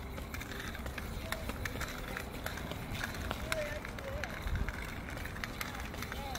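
Child's ankle skip ball toy in use on a hard outdoor court: the plastic ball swinging around and clattering over the surface, with the child's quick hopping footsteps, heard as light, irregular taps and clicks several times a second.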